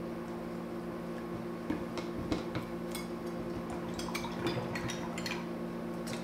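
Paintbrushes being rinsed in a plastic tub of water: scattered light clicks and taps of the brushes against the tub, with faint swishing of water, over a steady low hum.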